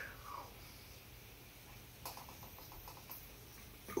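Faint mouth sounds of someone tasting hot sauce from a wooden stick: a quick run of small lip-smacking clicks about two seconds in, otherwise quiet room tone.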